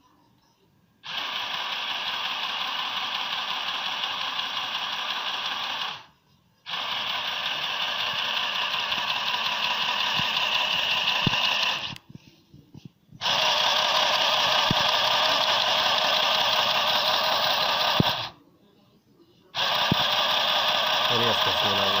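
Irit mini electric sewing machine stitching fabric in four runs of about five seconds each, starting and stopping abruptly with short pauses in between.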